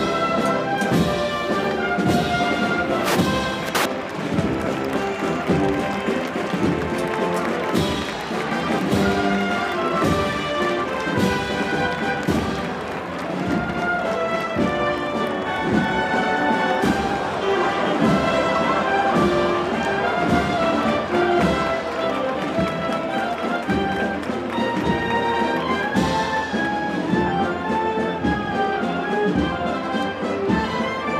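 A brass band playing a slow Holy Week processional march, held brass notes moving from chord to chord, with drum and cymbal strokes that are strongest in the first few seconds.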